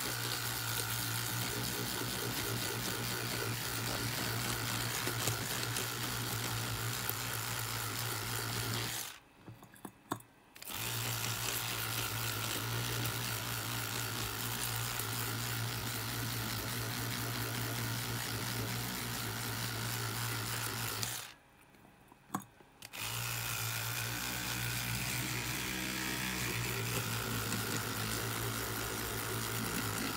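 Electric toothbrush with a round oscillating head running steadily as it scrubs a circuit board. It stops twice: for about a second and a half around nine seconds in, and for about two seconds around twenty-one seconds in.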